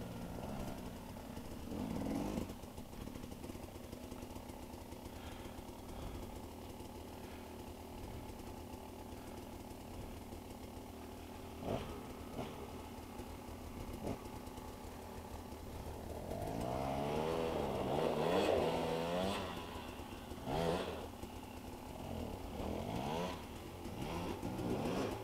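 A dirt bike idling steadily close by while another dirt bike ahead revs in short throttle blips, its rear wheel spinning and digging in deep mud. About two-thirds of the way through comes a long stretch of hard revving, rising and falling, the loudest part, then more short blips.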